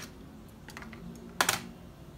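Plastic cassette tape being handled: a few faint ticks, then a sharp double clack about one and a half seconds in as the cassette is set down on a plastic MIDI keyboard.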